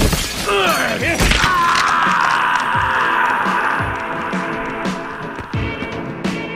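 Background music under a smashing sound effect: hard impacts in the first second or so, then a shattering crash of breaking debris lasting about three seconds.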